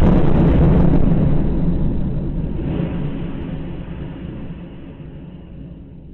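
Deep rumble of a missile explosion, loud at first and fading away steadily over several seconds.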